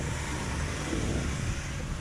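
Street traffic: a steady low hum of car traffic on the road alongside, with no distinct single event.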